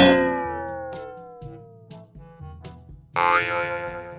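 Cartoon comedy sound effect: a sudden tone that slides steadily down in pitch over about two seconds, then a second bright effect about three seconds in, over light background music.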